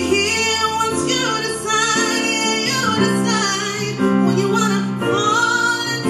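A woman singing live over instrumental accompaniment, her voice gliding up and down in long wordless runs over held chords that change every second or two.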